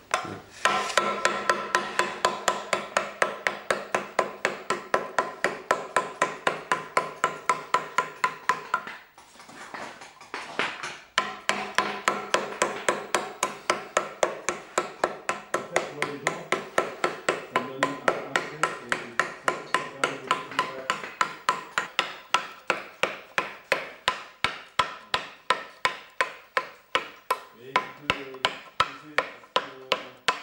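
Mallet blows on a stone-carving chisel cutting into a block of soft stone, an even run of sharp knocks at about three a second with a brief pause about nine seconds in. This is the hand roughing-out of a new lobe on a carved modillion.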